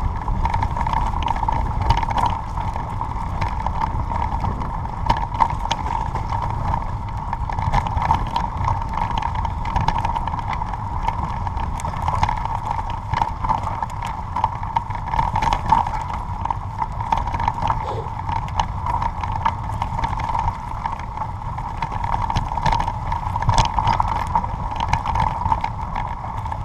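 Rattle and rumble of a ride over a rough forest dirt track, with a steady whine and many irregular knocks from bumps.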